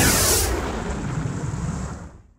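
Logo sound effect for an end card: a sudden burst of noise with a deep rumble and a falling tone in the first half second, fading away over about two seconds.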